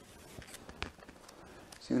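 Faint paper rustling with a few small clicks, typical of handling the pages of a book; a man's voice starts just before the end.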